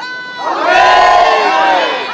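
A crowd shouting a slogan in unison. Its voices are drawn out into one long, loud call that starts about half a second in, rising and then falling in pitch.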